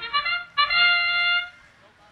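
The competition field's match-start signal: an electronic horn-like call of a few quick notes and then one long held note, marking the start of the autonomous period. It cuts off about a second and a half in.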